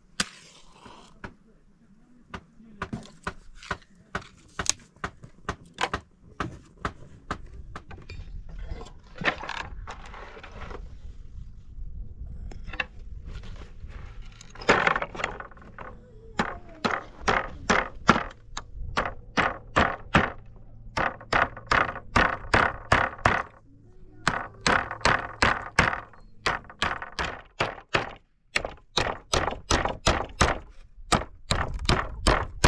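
Hammer driving nails through wooden planks to build a door: runs of sharp knocks, coming faster and closer together in the second half.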